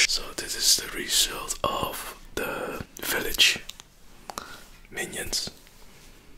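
A person whispering close to a microphone in short breathy phrases. The whispering thins out and grows fainter after about three and a half seconds.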